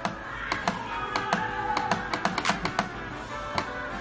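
Quick, irregular clicks from a laptop as an on-screen arrow is clicked again and again to enlarge a picture. Background music plays underneath.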